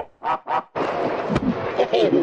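A man's voice exclaiming "Oh, wow", run through a video-editor audio effect that heavily distorts its pitch and tone. It comes as two short choppy bursts, then a dense, noisy stretch from about three-quarters of a second in.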